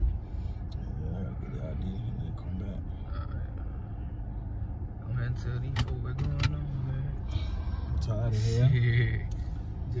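Steady low rumble of a car heard from inside the cabin, with quiet voices and a few sharp clicks around the middle.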